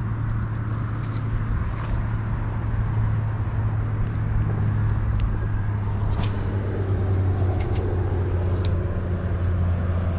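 Steady low drone of road traffic, with a few faint sharp clicks in the second half.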